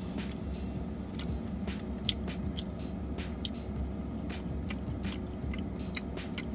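A person chewing a soft pretzel with cheese sauce close to the microphone, with many small, quick wet mouth clicks and smacks, over a low steady hum.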